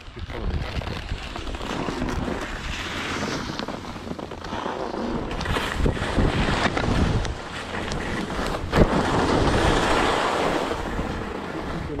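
Skis hissing and scraping over packed, chopped snow, swelling and easing with the turns, with wind rumbling on the microphone and a few sharp knocks, the loudest about three-quarters of the way through.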